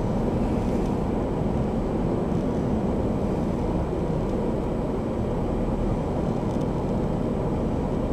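Steady low rumble inside a stationary car's cabin, unchanging throughout.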